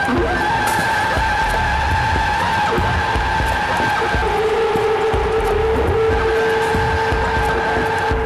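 Live ambient electronic music from a laptop setup: high drone tones held over a dense, noisy low rumble, with a lower held tone coming in about halfway through.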